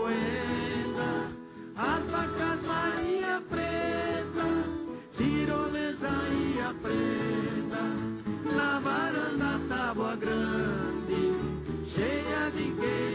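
An orchestra of violas caipiras (ten-string Brazilian folk guitars) playing a caipira song live, with voices singing over the plucked strings.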